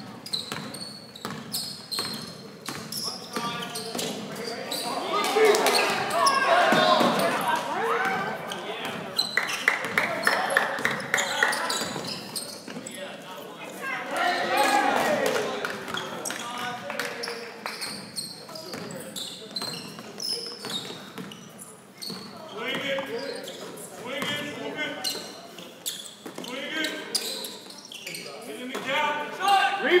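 A basketball dribbled on a hardwood gym court, with repeated sharp bounces echoing in the hall. Indistinct shouts from players and spectators come and go over the bouncing.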